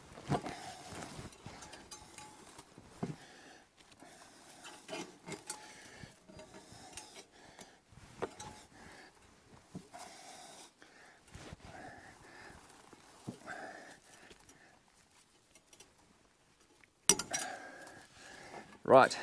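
Light, irregular metallic clicks and rattles of fencing wire being twisted and wrapped by hand around a steel gate upright and the wire netting, with a sharper, louder clatter of the netting near the end.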